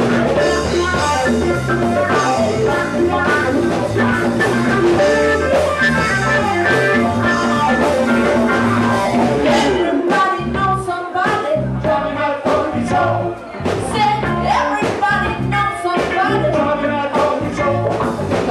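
Live funk-soul band playing with keyboard, electric guitars and drum kit. About halfway through the bass drops away and the groove turns sparser and more percussive.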